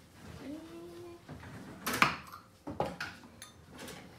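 Kitchen handling sounds: a few sharp knocks and clinks, the loudest about two seconds in, as a drawer is worked, spoons are taken out and a jar is handled.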